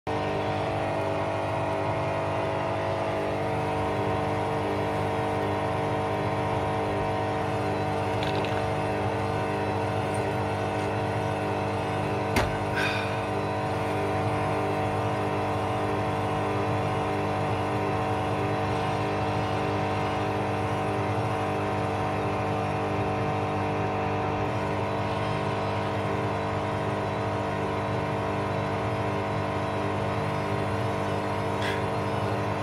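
Bush Rapid 15 front-loading washing machine running its 800 rpm final spin programme: a steady motor whine made up of several even tones over the drum's rushing noise. A single sharp knock comes about twelve seconds in.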